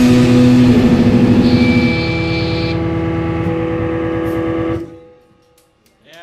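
A rock band's electric guitars and amplifiers holding a final sustained chord as a song ends. The chord wavers rapidly at first, then rings steadily and cuts off abruptly about five seconds in.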